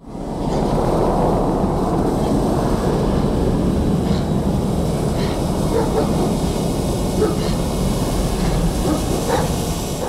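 Diesel engine of a modernized 2TE10M mainline locomotive, refitted with a Belgian diesel-generator set, running steadily as the locomotive moves slowly forward. The sound is a loud, even, low-pitched noise with a few faint short sounds over it.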